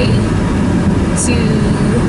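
Steady rumble of a car's road and engine noise heard inside the cabin while driving.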